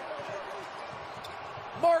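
Steady arena crowd noise with a basketball bouncing on the hardwood as it is dribbled up the court. A commentator's voice comes in near the end.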